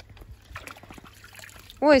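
Faint water splashing and trickling in a shallow inflatable paddling pool as a toddler moves about and dips a plastic watering can. A woman's voice cuts in near the end.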